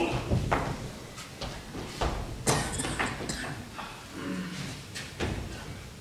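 Footsteps and scattered short knocks of actors moving about a wooden stage, irregularly spaced, with a brief faint murmur of a voice about four seconds in.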